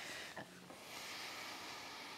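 Faint room tone, a steady soft hiss, with one soft brief sound about half a second in.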